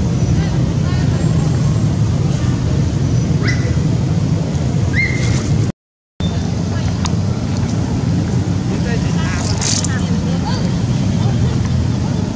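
A loud, steady low rumble with a few short, high rising squeaks from the macaques. The sound cuts out completely for about half a second near the middle.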